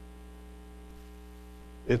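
Steady electrical mains hum, a low buzz with a stack of even overtones, in the sound system's pickup. Speech starts again right at the end.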